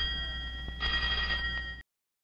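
Steady, high, bell-like ringing tones over a low hum, swelling about a second in and cutting off suddenly just before the end.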